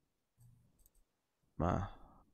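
A few faint clicks from a computer mouse, then a man's voice starts near the end.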